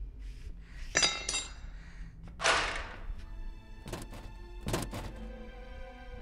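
Film sound effects: two heavy thunks with a metallic ring about a second in, a loud hissing crash around two and a half seconds, then several sharp knocks, while score music swells in under them from about halfway.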